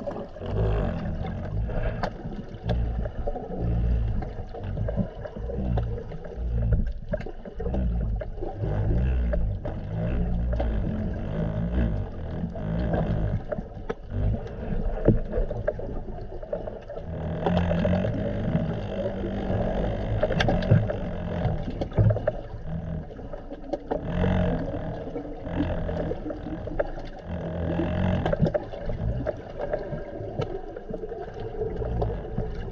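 Muffled underwater noise picked up by a camera in its waterproof housing: a low rumble that swells and fades, with faint hum and small clicks.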